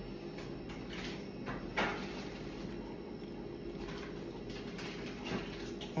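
A person drinking from a glass, with short swallowing sounds about one and two seconds in, over a steady low hum.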